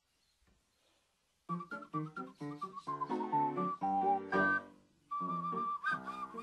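Ocarina playing a melody over a chord accompaniment, starting about a second and a half in after near silence, with a short break just before five seconds in.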